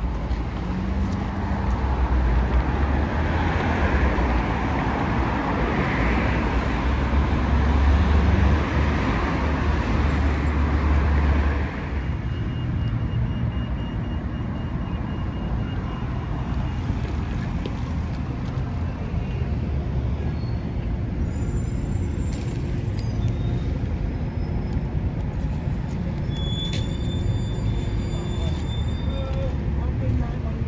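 Road traffic on a town street: vehicles running past, loudest in the first dozen seconds, then dropping abruptly to a steadier, quieter traffic hum.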